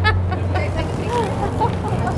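Steady low rumble of city street traffic with faint voices of passers-by.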